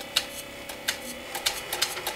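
Clarke 300 mm variable-speed metalworking lathe turning slowly while copper wire is wound onto a coil bobbin: a steady motor whine with irregular sharp clicks.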